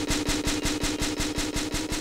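Neurofunk drum and bass with no drums in this stretch: a rapid stuttering synth pulse, about ten a second, over a held low tone that slowly rises.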